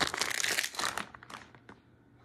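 Blind-box plastic wrapping being crumpled by hand: a dense crinkling for about the first second, then a few scattered crackles that die away.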